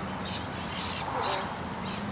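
Birds calling in the background, short high calls repeating every half second or so over steady outdoor noise.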